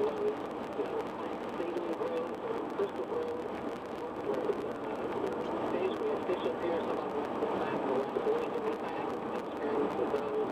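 Steady road and engine noise heard inside a car cruising at highway speed, a continuous drone with a wavering hum.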